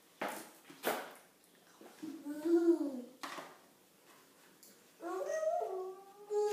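A small child's wordless whiny calls, twice, the first arching up and down in pitch and the second rising and held, with a few short clicks of a plastic spoon against a plastic dessert cup.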